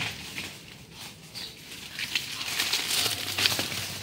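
Leaves and stems rustling and crackling as foliage is pushed aside by hand, louder in the second half.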